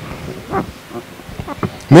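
A pause in a man's speech into a handheld microphone, with a few faint short mouth and breath noises, before he starts speaking again right at the end.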